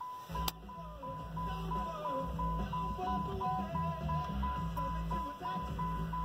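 Car radio switching on with music about a third of a second in, over the car's key-in-ignition warning chime beeping steadily about three times a second: the picked ignition lock has been turned, powering up the car's electrics.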